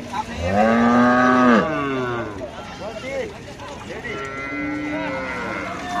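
Cow mooing. A loud, drawn-out moo starts about half a second in, lasts about a second and a half and falls away at its end. A softer moo of similar length follows past the middle.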